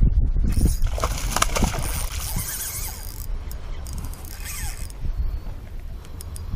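A hooked freshwater drum thrashing and splashing at the water's surface: a long burst of splashing, then a second shorter one.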